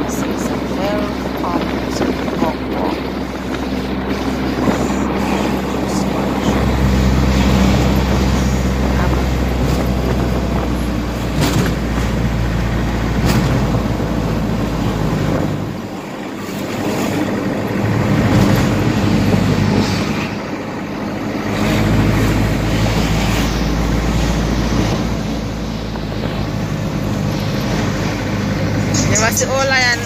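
Engine and road noise heard from inside a moving minibus: a steady low drone with tyre rumble that eases off briefly twice near the middle, then picks up again.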